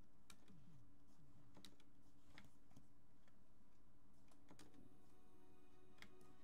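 Faint, scattered computer-keyboard clicks, one or two a second, over a low steady hum; soft background music comes in near the end.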